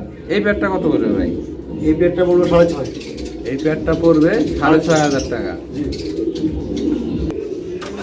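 Racing pigeons cooing in a loft: a steady low cooing from several birds, with men's voices talking over it at times.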